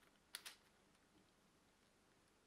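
Two quick plastic clicks, a split second apart, from the LEGO parts of a rubber-band crossbow pistol being handled. The rest is near silence.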